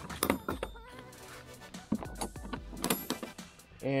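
Metal draw latches on a rugged plastic cargo box being handled, giving a series of sharp clicks and clacks, mostly in the first second with a couple more near 2 and 3 seconds in. Background music plays underneath.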